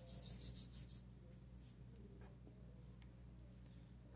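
Faint scratching of a pen on paper for about a second at the start, then only a few faint ticks over a low steady hum.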